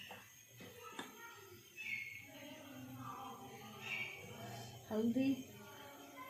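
Faint, indistinct voices in the background, with a short louder voice sound about five seconds in and a single click about a second in.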